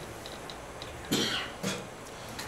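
A person coughing twice about a second in, the second cough shorter than the first.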